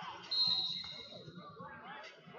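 A single high, steady whistle blast lasting just under a second, over background voices and chatter.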